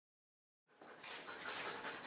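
A husky panting in quick, regular breaths, starting under a second in after silence.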